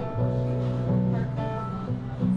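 Acoustic guitar strumming chords of a slow country song, with no singing.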